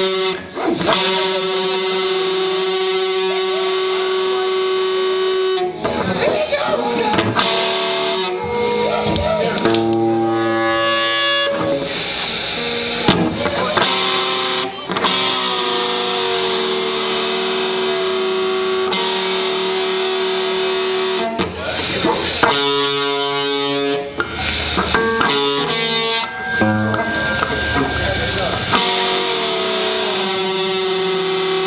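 Amateur rock band playing live, led by distorted electric guitars holding sustained chords that change every few seconds.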